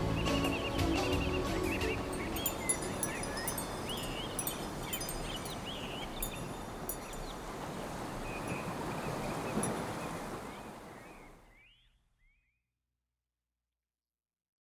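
Closing music dies away, leaving an outdoor ambience: a steady rushing noise with birds chirping now and then. It fades out to silence about twelve seconds in.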